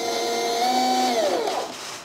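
Electric drive motor and gearbox of a 1/10-scale RC truck whining at steady speed, rising a little partway through, then winding down and stopping about a second and a half in.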